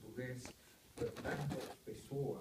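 A man's voice reading aloud in a small room, in two short spoken stretches with a brief pause between them.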